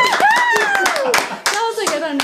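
A few people clapping by hand, with excited voices and laughter over it; one voice gives a long falling cheer in the first second.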